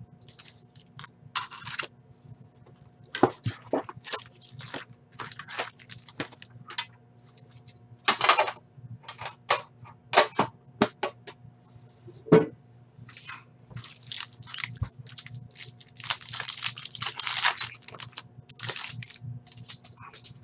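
Foil trading-card pack wrappers crinkling and tearing as packs are opened and the cards handled: irregular crackly rustles, with a longer dense crinkle near the end.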